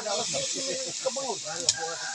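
Chopped pork frying in a wide pan over a wood fire, a steady sizzling hiss as it is stirred with a metal spatula. There is one sharp click near the end.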